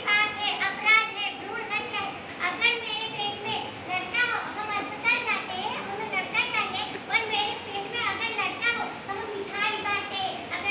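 A high-pitched woman's voice calling out in quick rising and falling phrases, without a break.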